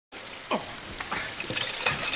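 Water spraying hard from a burst kitchen pipe: a steady hiss. A few short sounds that fall in pitch cut through it, the loudest about half a second in.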